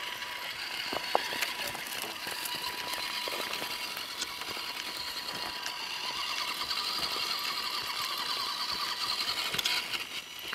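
The electric motor and SCX10 gear transmission of a scale RC rock crawler whine steadily as it drives, with a few sharp clicks. Over the last few seconds the whine rises in pitch and gets a little louder as the throttle opens, then drops away at the end.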